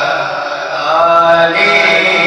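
A man reciting a naat, an Urdu devotional chant, into a microphone without instruments. He sings long held notes with a wavering melody that grows louder and rises in pitch about halfway through.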